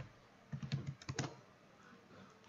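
A short run of computer keyboard keystrokes, typing a value into code, with a few clicks bunched between about half a second and a second and a half in.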